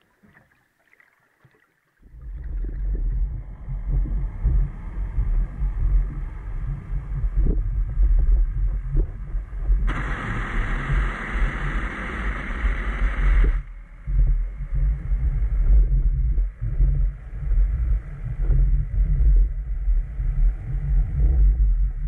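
A deep, uneven rumble sets in about two seconds in and runs on. For a few seconds in the middle a loud rushing hiss joins it.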